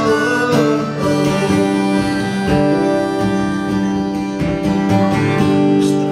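Acoustic guitar strummed steadily, with a harmonica playing long held notes over it in an instrumental break between sung verses.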